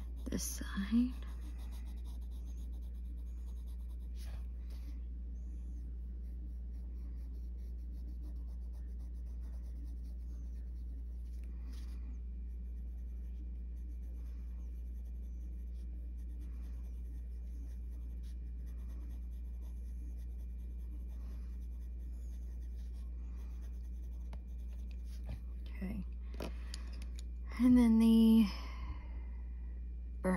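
Faber-Castell Polychromos colored pencil scratching faintly on paper in short shading strokes, over a steady low hum. A brief voice sound comes about a second in, and a louder one near the end.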